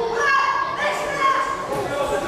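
Raised, high-pitched voices shouting and calling out from the crowd and corners during a kickboxing bout, in a large hall.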